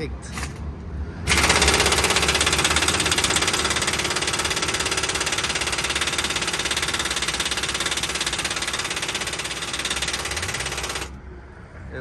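Impact wrench hammering rapidly and continuously for about ten seconds on a truck's lower shock absorber bolt, starting about a second in and stopping shortly before the end. The bolt does not break loose: it is seized solid.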